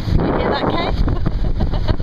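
Wind buffeting the microphone on a sailing yacht under way, over the rush of water along the hull.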